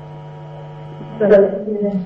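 Steady electrical mains hum with a row of faint even overtones. About a second in, a person's voice breaks in briefly.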